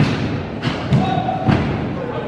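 A few heavy thuds from wrestlers hitting each other and the ring, over the noise of the crowd and some voices.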